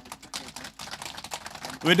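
Scattered applause from a seated audience, heard as many separate hand claps. A man's voice comes back in near the end.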